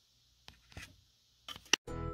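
A few faint rustles and light taps of hands handling paper sticker books, with a louder rustle about one and a half seconds in. Music starts just at the end.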